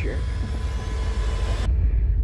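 A deep, steady rumble under a thin whoosh that rises in pitch and cuts off suddenly near the end: a dramatic sound-design riser building to a reveal.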